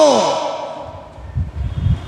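A man's voice trailing off on a falling pitch at the end of a phrase, then a breath into a close headset microphone, heard as a low rumble in the second half.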